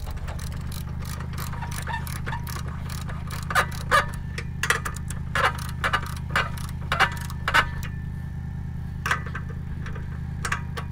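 Socket wrench ratcheting in irregular runs of sharp clicks as a chain nut on an Andersen No Sway weight-distribution hitch is tightened, over a steady low hum.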